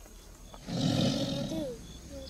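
A tiger's roar, about a second long, starting just under a second in and ending in a short falling glide.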